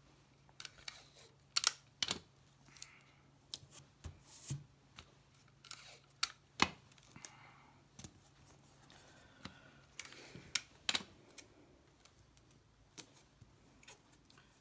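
Clear adhesive tape pulled from a desk tape dispenser and torn off, with a thin plastic transparency sheet crinkling as fingers press it down onto a wooden board. The sound comes as a string of short, sharp clicks and brief rustles at irregular intervals.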